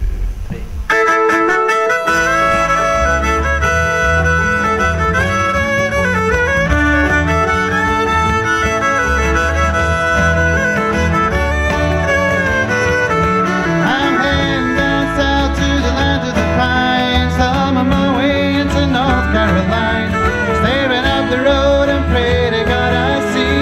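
Live acoustic folk band playing an instrumental intro. A fiddle carries the melody over strummed acoustic guitar and plucked strings, and an electric bass joins about three seconds in. The music starts about a second in.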